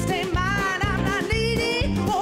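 Live band with electric guitars, bass, keys and drums playing an instrumental break: a lead line with bending, sliding notes over a steady drum and bass groove.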